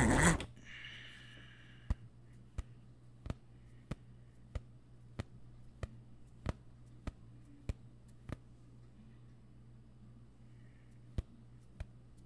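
A series of sharp clicks, evenly spaced about one every two-thirds of a second, stopping for a few seconds and then three more near the end, over a steady low hum.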